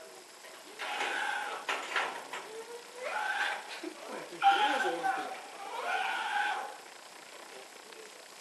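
A goat bleating repeatedly in short calls, mixed with people's voices.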